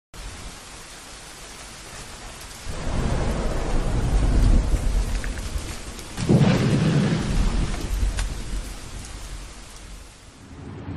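Steady rain with two long rolls of thunder, starting about three and six seconds in, then dying away near the end.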